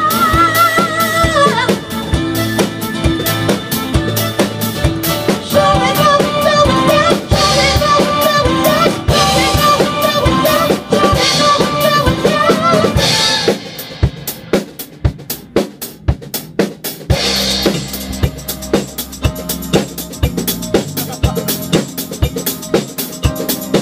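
Live band rehearsing a 1970s retro song: a woman sings with vibrato over drum kit and backing instruments. About 13 seconds in the singing stops and the drum kit plays on almost alone, then the rest of the band comes back in a few seconds later.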